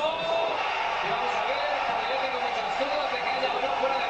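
Football match broadcast played through computer speakers: a male commentator talking steadily over stadium crowd noise.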